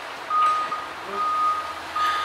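A vehicle's reversing alarm: one steady high-pitched beep repeating at an even pace, about three beeps of roughly half a second each.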